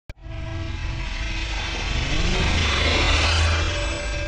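Intro sting for the channel logo: a click at the start, then a low rumble and a whooshing, jet-like swell that builds until just before the end, with sustained musical tones underneath.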